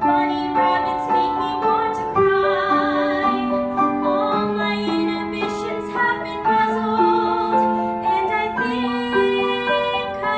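A solo singer performing a musical-theatre song into a microphone, holding long notes with vibrato, over instrumental accompaniment.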